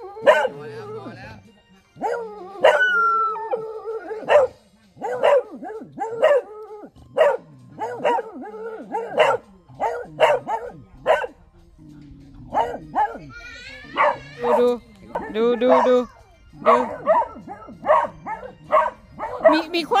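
A beagle barking over and over in short, loud barks, about two a second, with a brief lull around the middle.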